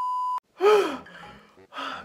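A steady high test-card beep cuts off abruptly, then a person gives a loud, breathy gasp whose pitch rises and falls, followed near the end by a short breath.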